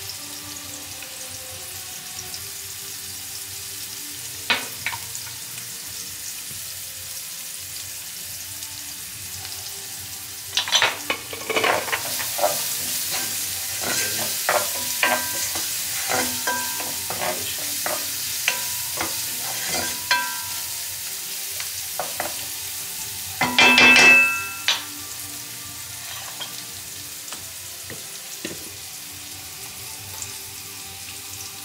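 Vegetables frying in a pan on a gas stove, with a spoon stirring and scraping through them; the sizzle grows louder a little before halfway. Scattered knocks of utensils on the pan, with a loud clatter about three-quarters of the way through.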